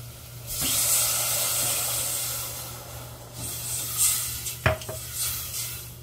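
Water poured into a hot steel saucepan of roasted whole-wheat flour and onions sizzles loudly about half a second in, then fades over a few seconds as a metal spoon stirs it, with a single clink of the spoon on the pan later on.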